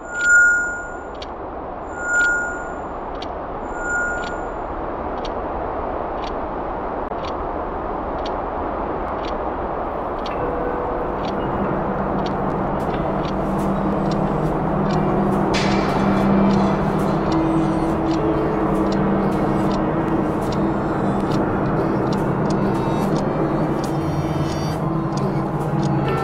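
A quartz wall clock ticking about once a second, opening with three short high tones two seconds apart, each fainter than the last. Under it a soundtrack drone swells steadily, with low held notes coming in about halfway.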